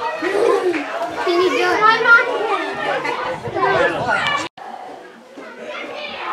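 Several children's voices playing and chattering at once. The sound cuts out abruptly for a moment about four and a half seconds in, and the voices are quieter after that.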